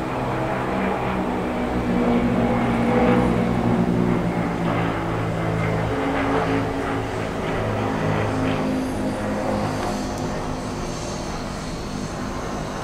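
Several single-engine propeller light planes flying past in formation, their engines making a steady drone that swells to its loudest a few seconds in and then slowly fades.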